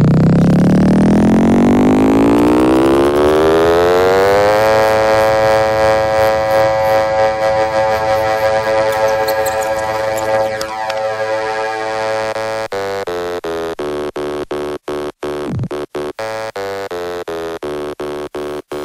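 Electronic dance music: a synthesizer tone glides steadily upward for about four seconds, then holds as a sustained chord. About two-thirds of the way in, the chord is chopped into a rhythmic stutter that gets faster, with brief cut-outs.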